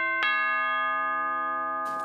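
Two-note doorbell chime (ding-dong): the second note strikes just after the start and both notes ring on, slowly fading.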